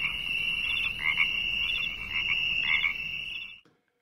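A chorus of frogs calling at night: a steady high trill with louder croaks about once a second, cutting off suddenly near the end.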